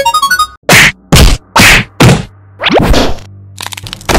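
Cartoon sound effects: a short rising jingle of plinking notes, then four loud whacks about half a second apart, followed by a rising glide and a few quick ticks.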